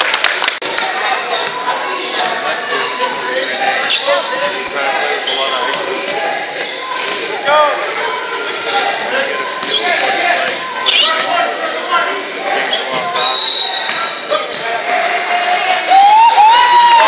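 Live sound of a basketball game in a gym: a ball bouncing on the hardwood floor, shoes squeaking and players and spectators calling out. The sound echoes in the large hall.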